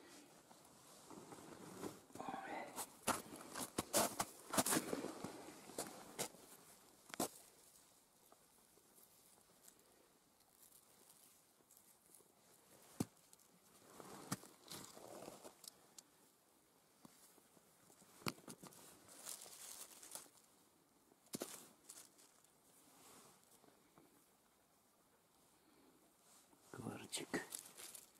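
Rustling and crunching of stony soil, dry leaves and pine needles, with sharp clicks of small stones knocking together: busy for the first several seconds, then sparse single clicks and short rustles.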